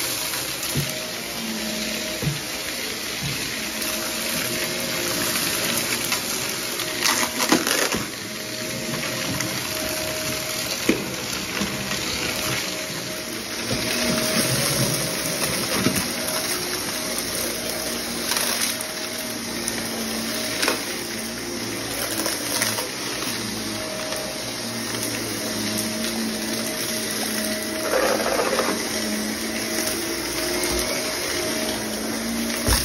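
Shark upright vacuum cleaner running steadily on carpet, with occasional sharp clicks as debris is sucked up.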